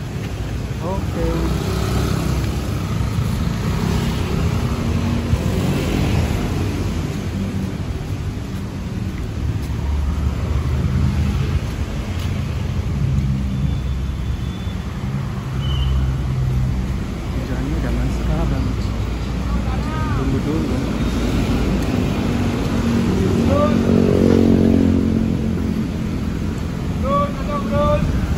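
Road traffic on wet asphalt: motorcycles and cars passing close by, with a motorcycle engine revving up loudest about three quarters of the way through.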